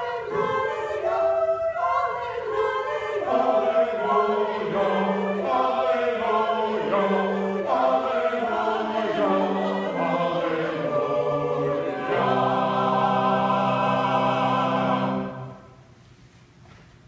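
A church choir singing a hymn in several parts. About three-quarters of the way through it settles on one long held chord, which cuts off shortly before the end.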